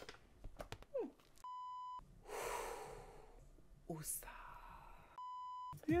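Two censor bleeps, each a steady single beep about half a second long: one about a second and a half in, the other near the end. They mask swearing. Between them comes a breathy gasp.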